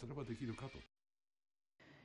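A man's voice trailing off, then about a second of dead silence at an edit cut.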